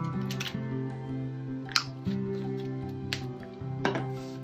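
Soft background music with long held notes. A few light clicks come through it, from a small plastic dropper bottle of watercolour being handled and set down.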